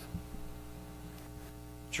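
Steady low electrical mains hum, with a fainter steady tone above it and no other sound.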